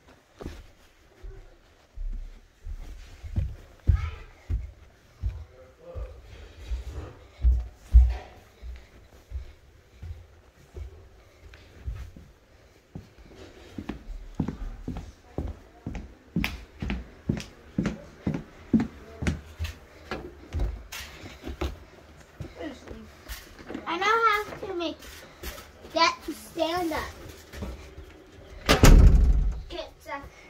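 Footsteps of a person walking through a house, thudding on the floor at about two steps a second through the middle. A child's voice calls out briefly twice near the end, and a loud bump comes just before the end.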